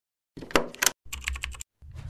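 Computer keyboard typing in two short bursts of quick key clicks, followed just before the end by a deep thump that carries on as a low rumble.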